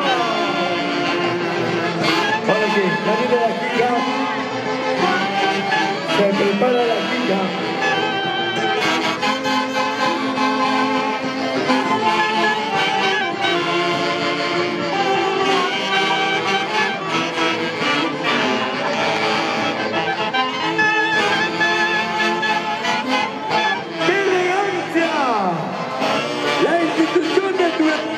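Live tunantada dance music from an Andean folk orchestra, with saxophones carrying the tune over violins, playing continuously.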